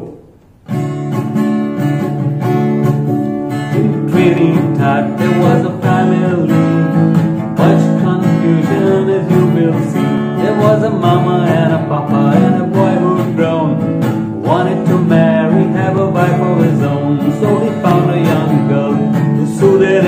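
Acoustic guitar strummed, starting suddenly under a second in, with a man's voice singing a calypso-style song over it from about four seconds in.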